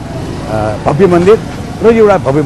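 A man speaking in Nepali.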